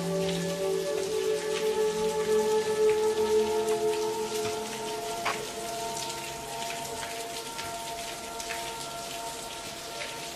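Water drops falling steadily, many small separate taps, under slow background music of held tones that grows quieter after about four seconds.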